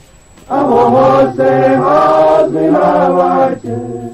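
A group of voices singing a slow, chant-like song in held notes. The phrases start about half a second in, with short breaths between them, and the singing gets quieter near the end.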